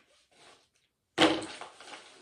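Paper mailer envelope being handled, rustling and crinkling, starting suddenly about halfway through. A single spoken word lands with it.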